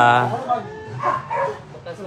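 A man's drawn-out 'oh' call on a steady pitch, fading out about half a second in, followed by softer, short vocal sounds.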